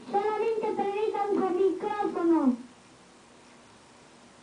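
A young boy's high voice delivering drawn-out, sing-song phrases in a small room, breaking off about two and a half seconds in; after that only faint room tone.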